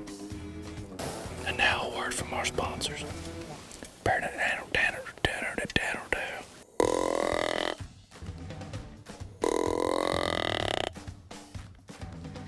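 Whitetail deer grunt tube blown twice: two low, drawn-out grunts of about a second each, the second a little longer.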